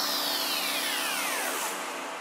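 Psytrance breakdown: the kick drum and bass cut out, leaving a synthesized noise wash with a pitched tone gliding down from high to low over about a second and a half, fading slowly.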